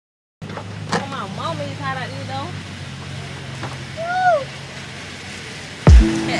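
A steady low engine hum, with a few short wavering voice sounds over it and a loud thump just before the end.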